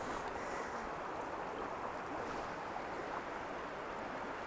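Small creek's water running steadily over a rocky riffle, an even rushing with no change.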